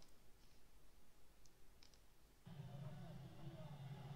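Near silence: room tone with a couple of faint clicks, then a faint low hum that starts a little past halfway.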